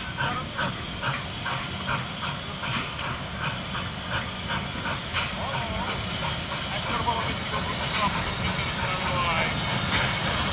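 Steam locomotive of a rack railway working a passenger train, its exhaust beating in a regular chuff about two to three times a second over a steady hiss of steam.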